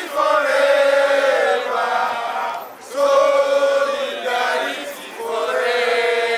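A group of protesters chanting together in unison, in phrases of two to three seconds with short breaks between them.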